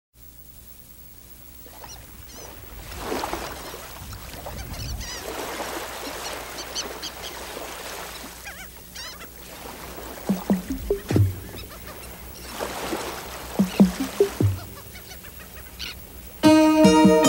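Bird calls, honking and chirping, over slow swells of rushing noise. The loudest honks come in two bunches in the second half.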